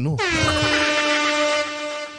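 An air horn sound effect: one long, steady horn blast at a single fixed pitch, starting a moment in.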